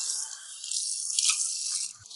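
Water running from a bathroom tap into a sink basin, a steady hiss, with a hand under the stream.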